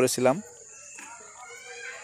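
A faint, drawn-out animal call in the background, beginning about a second in, just after a man's speech stops.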